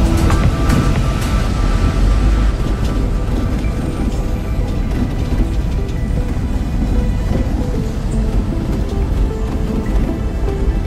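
Background music plays over the steady low rumble of a vehicle driving.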